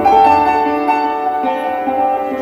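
Live ensemble playing a slow instrumental passage of Turkish art music: sustained melody notes that change pitch every half second or so.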